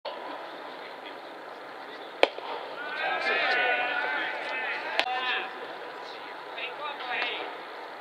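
Voices calling out across a ballfield, with two sharp cracks, one about two seconds in and one about five seconds in.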